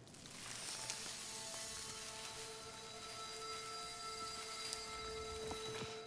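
Shimmering magic sound design: a swell of steady held tones over a high sparkling haze, with a few brief glints, accompanying a wilted plant being magically revived and made to bloom.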